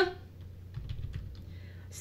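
A few faint computer keyboard keystrokes, typing in a new ticker symbol, over a steady low hum.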